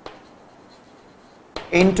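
Chalk writing on a blackboard: a sharp tap as the chalk meets the board, then faint scratchy strokes. Near the end a man says one word.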